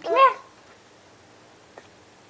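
A toddler's short squeal, rising then falling in pitch over about half a second, followed by a faint click.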